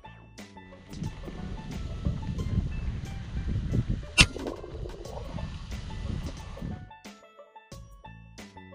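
Wind rumbling on the microphone, broken about four seconds in by a single sharp crack from an FX Impact X .22 PCP air rifle firing a slug.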